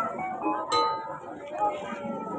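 Javanese gamelan metallophones and gongs ringing out sparsely as the piece winds down, with one sharp struck note about two-thirds of a second in.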